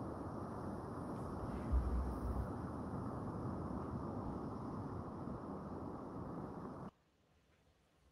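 Underwater ambient noise: a steady low rush, with a brief low thump about two seconds in, cutting off abruptly about a second before the end.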